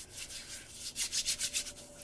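Hands rubbing together, working moisturizing butter into the skin: a quick, even run of soft skin-on-skin strokes.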